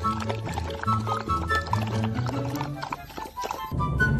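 Background music with a steady bass line, over which two golden retriever puppies lap water from a metal bowl with quick wet splashing clicks. The music changes abruptly near the end.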